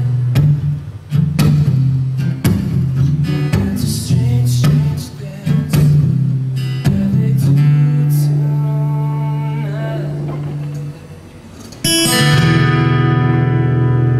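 Acoustic guitar strummed in chords, then a chord left to ring and fade, a short drop in level, and a new chord struck about twelve seconds in and left ringing.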